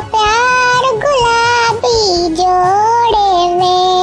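A high, pitched-up voice singing a melody in long held notes that slide between pitches, with music underneath.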